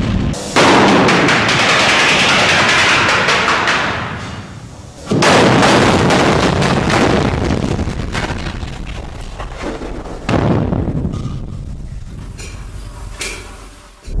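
Three explosive blasts at a drill-and-blast tunnel face, about five seconds apart, each a sudden bang that dies away over a few seconds.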